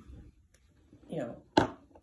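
A single sharp knock, about one and a half seconds in, just after a few quietly spoken words.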